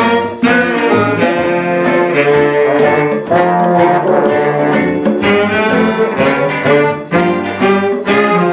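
A big band's saxophone, trumpet and trombone sections play a jazz chart together, loud and full. There is a short gap just after the start and a brief break about seven seconds in.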